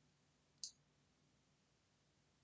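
Near silence: room tone, with a single faint, short, high click just over half a second in.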